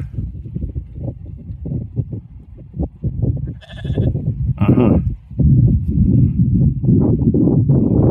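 Scottish Blackface sheep bleating twice in quick succession about halfway through, over a heavy low rumble.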